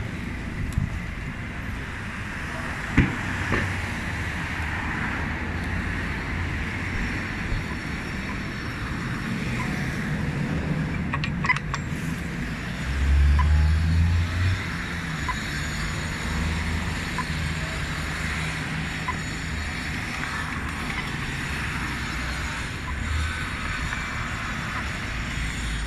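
City street traffic: steady road noise of cars passing, with a louder low rumble of a vehicle going by about thirteen seconds in and a few short knocks.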